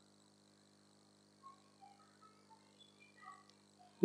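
Near silence: room tone with a steady faint hum, and a scatter of very faint short chirps at varying pitches in the second half.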